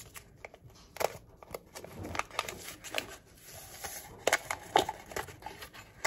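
Paper hot-chocolate packet crinkling in the hands as it is handled and torn open, a scatter of sharp crackles and clicks.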